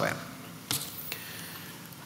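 A pause in a man's speech: faint room tone, with one short hissing sound, like a quick breath, about a third of the way in.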